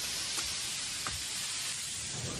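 Steady hiss of an anime smoke-cloud sound effect, with two faint ticks in it.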